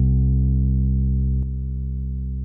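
A sustained electric bass note ringing through an amp; about a second and a half in, a click as the Aguilar TLC Compressor pedal is switched on, and the note's volume drops at once, the compression cutting gain with the level knob at noon.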